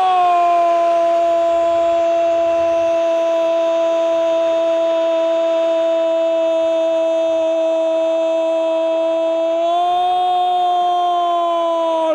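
A football commentator's long held goal cry, one drawn-out "gooool" sustained at a steady pitch, lifting slightly in pitch near the end.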